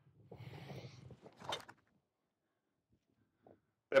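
A golf club strikes a ball: one short, sharp crack about a second and a half in, after a second or so of soft rustling.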